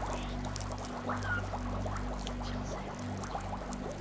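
Low, steady suspense drone of a game-show tension bed, pulsing slightly, with a faint fizzing, crackling texture over it.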